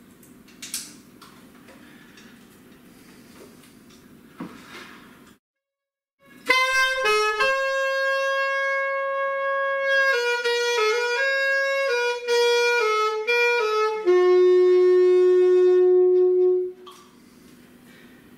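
Alto saxophone playing a short melodic phrase: a long held note, a run of quicker notes, then a long lower note, the loudest of the phrase. Before it come a few light clicks of the instrument being handled.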